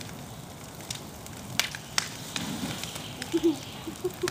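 Fire burning through a wooden structure: a steady rush of flame with sharp cracks of burning wood, two loud ones about one and a half and two seconds in.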